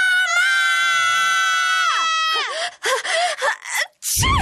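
A cartoon boy's long, high-pitched yell of "Mama!", held for about two seconds and then dropping away, followed by a few short breathy sounds.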